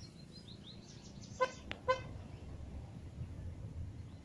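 Two short car-horn toots about half a second apart, heard over a steady low city hum, with faint bird chirps near the start.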